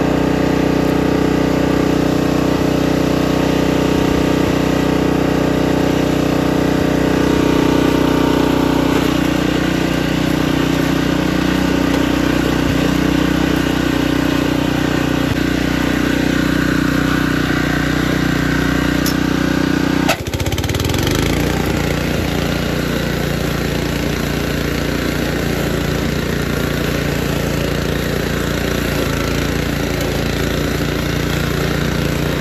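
Honda UM2460 walk-behind grass cutter's engine running steadily; its tone changes abruptly about twenty seconds in.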